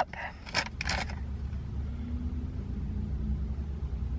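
A paper-wrapped parcel being torn open and rustled, with a few sharp crinkles in the first second. Under it runs a steady low rumble from the road beside the parked car.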